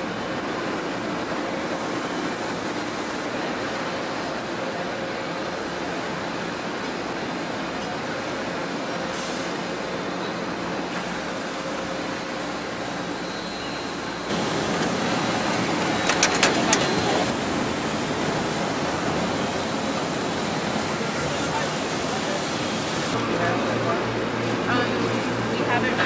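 Steady factory machinery noise with indistinct voices in the background. It steps up louder about fourteen seconds in, with a brief run of sharp clicks a couple of seconds later.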